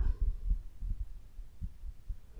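Soft, irregular low thumps over a steady low hum, with no speech.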